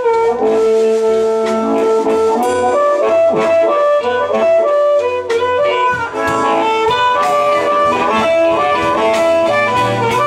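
Amplified blues harmonica cupped against a handheld microphone, playing a solo: one long held note for about the first two seconds, then a run of shorter phrased notes. Behind it a band plays: Fender Telecaster electric guitar, Fender Precision bass and drums.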